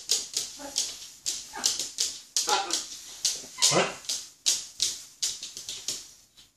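Young blue-and-yellow macaws giving food-begging calls while being spoon-fed: a fast run of short, whining squawks, about two to three a second, that stops near the end.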